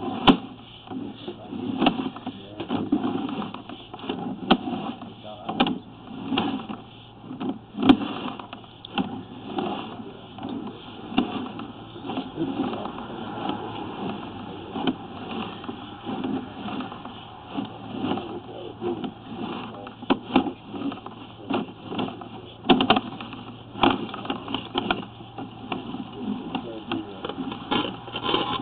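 Sewer inspection camera head and push cable being pulled back through corrugated drain pipe: irregular knocks and clicks over a steady low hum.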